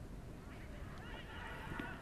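Faint background sound of a football match broadcast, with several short calls that rise and fall in pitch, starting about half a second in.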